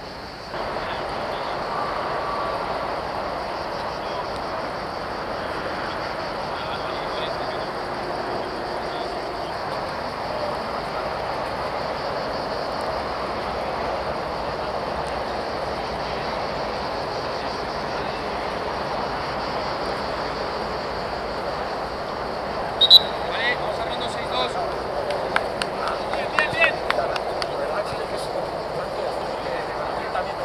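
Steady background hubbub of a group of players' voices on an open training pitch, with no single word standing out. Near the end comes a run of sharp short sounds and a brief shout.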